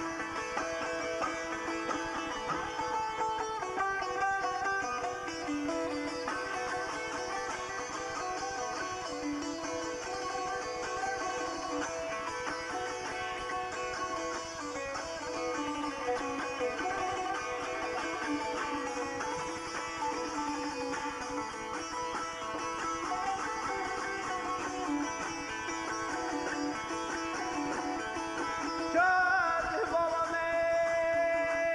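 Azerbaijani saz, a long-necked plucked lute, playing a solo instrumental melody in the ashiq style. Near the end a man's voice comes in singing.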